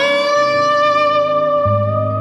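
Stratocaster electric guitar playing a live instrumental lead line: one long sustained high note, held steady after sliding up into it right at the start. A low bass note comes in under it near the end.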